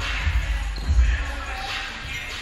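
Volleyballs being struck and bouncing on a gym floor: a couple of dull thuds about half a second apart near the start, over voices chattering in a large, echoing hall.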